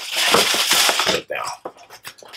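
Handling noise from a suede sneaker being turned and squeezed at its heel cage: a rustling scrape for about the first second, then faint.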